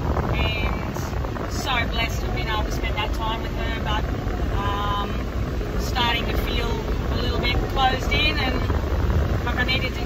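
Inside the cabin of a Toyota LandCruiser Troop Carrier driving along beach sand: a steady low rumble of engine and tyres with road and wind noise.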